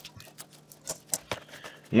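Kitchen knife slicing cabbage on a plastic cutting board: a handful of light, irregular taps of the blade hitting the board, the loudest a little after a second in.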